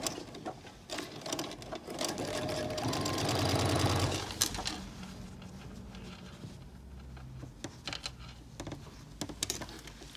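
Electric sewing machine stitching a narrow hem in cotton fabric. It runs loudest for a couple of seconds about two seconds in, then keeps stitching more quietly after about four and a half seconds.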